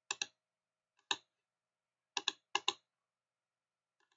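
Computer mouse clicks: about seven faint, sharp clicks, mostly in quick pairs, near the start, about a second in, and twice more a little past two seconds in.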